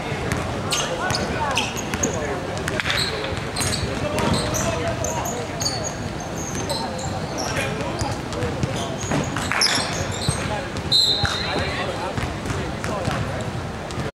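Basketball game on a hardwood gym floor: the ball bouncing as it is dribbled, sneakers squeaking in short chirps, and players and onlookers talking and shouting.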